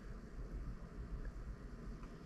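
Faint background room tone: a low steady rumble with light hiss and no distinct events.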